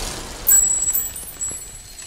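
The echoing tail of a loud pistol shot in a large stone hall, then a sudden high metallic ringing about half a second in that fades slowly, with a small click about a second later.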